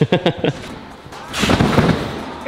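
A short laugh, then about one and a half seconds in a single low thud with a brief rush of noise as a gymnast takes off from a trampoline bed into a twisting somersault.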